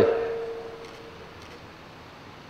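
A pause in a man's amplified talk: the end of his last word rings on as a faint steady hum through the microphones and sound system, dying away after about a second, leaving only low room hiss.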